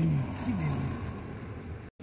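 Low rumble of a Volkswagen Beetle's air-cooled engine and tyres on cobbles heard from inside the cabin, dying down after a voice trails off at the start. The sound cuts off abruptly near the end.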